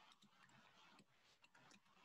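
Near silence: faint room tone with a few light, irregular clicks.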